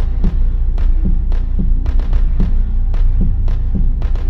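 Breakcore electronic music: a heavy, steady sub-bass drone under repeated low kick-drum hits that drop in pitch, with sharp snare-like hits about two to three times a second.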